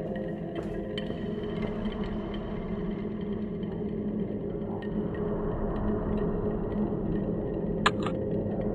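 Dark ambient drone music: held low tones over a rumble, slowly swelling. A short click comes just before the end.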